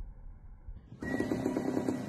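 A low, muffled rumble, then about a second in music starts suddenly and louder, with a quick pulsing beat and a held high note.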